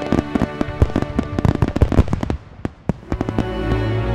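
Fireworks bursting and crackling in rapid, irregular pops over music. About halfway through the music drops out briefly, leaving only the pops, then returns with a deep bass.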